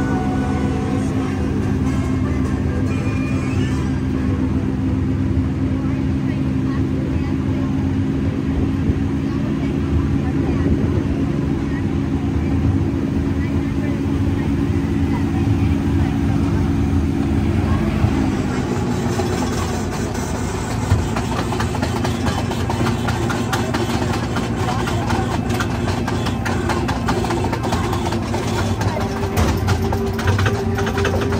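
Casey Jr. Circus Train, a small amusement-ride train, running on its track. A steady low engine drone drops in pitch a little past halfway through, and many fast clicks of the wheels on the rails follow.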